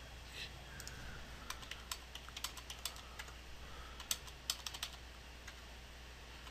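Computer keyboard typing: a run of quick keystrokes in two bursts, the first about one and a half to three seconds in, the second about four to five seconds in, as a date and a salary figure are keyed into form fields.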